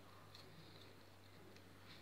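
Faint snipping of large dressmaking scissors cutting sequined lace fabric, a few soft clicks of the blades over a steady low hum.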